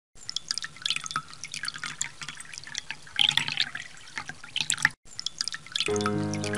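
Raindrops falling onto a water surface: many separate drips and small splashes, thickest just past three seconds in. The sound drops out for an instant just before five seconds, and music comes in at the very end.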